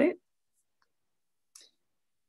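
The end of a spoken word, then near silence on the video-call audio, broken by one faint, very short click about a second and a half in.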